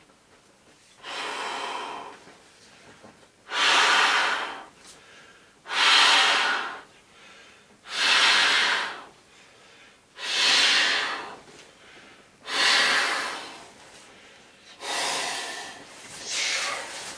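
A person blowing hard into an inflatable pony's valve by mouth, seven long breaths of about a second each, one every two and a half seconds or so, the first softer than the rest.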